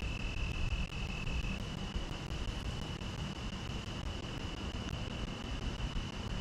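Wind buffeting the microphone as a steady low rumble, with a steady high-pitched trill running through it.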